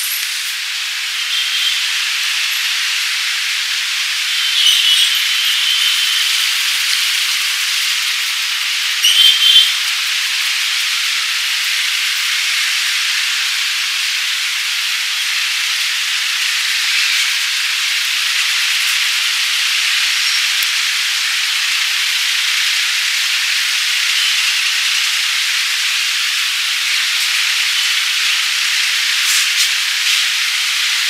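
Fingers rubbing and scratching through hair on the scalp during a head massage: a steady close rustle, with brief louder moments about five and nine seconds in.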